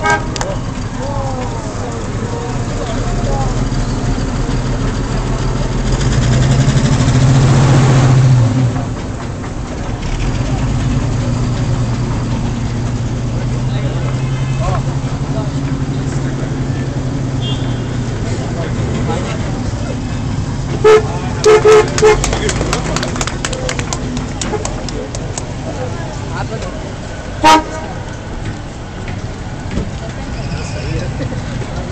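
Vintage car engines running low and steady as rally cars move off, one passing close and loudest for a couple of seconds early on. About two-thirds of the way through, a car horn toots four short times in quick succession, then once more a few seconds later.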